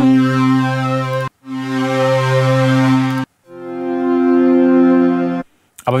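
Synthesized string presets from Ableton Live's Analog instrument, analog-modelled strings rather than real ones, auditioned from the preset browser: three held chords, each cutting off abruptly, with short silences between them.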